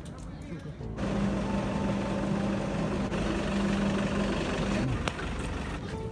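A steady engine hum under a noisy rush, starting abruptly about a second in and stopping just before the end.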